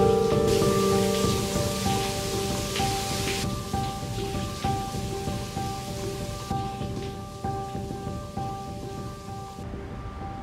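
Soft background score: a slow, evenly paced line of single sustained notes over a steady hiss like rain. The hiss drops away in steps and the whole fades gradually toward the end.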